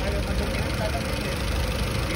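Honda Accord engine idling steadily with the hood open. The engine is overheating and its coolant is boiling, which the mechanic puts down to a thermostat that likely no longer opens and a radiator fan that is slow to switch on.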